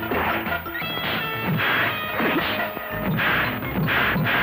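Dubbed film fight sound effects: several heavy punch-and-smash impacts in quick succession, laid over the background music score.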